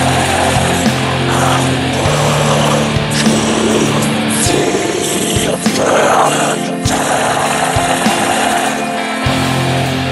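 Blackened drone doom metal: heavily distorted electric guitar holding long low notes that change every few seconds, under a dense wall of noise with occasional short hits.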